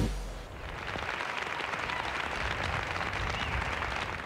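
A large crowd applauding: a steady, even clatter of many hands that swells in over the first second.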